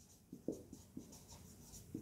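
Marker pen writing on a whiteboard: a string of faint, short strokes as a word is written out.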